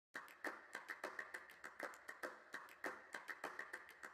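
A fast, uneven run of faint sharp clicks or taps, about six to eight a second.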